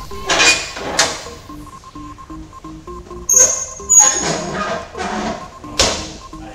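Background music with a simple stepped melody, over about five sharp metallic clanks from a plate-loaded leg press machine as its sled is pushed and lowered.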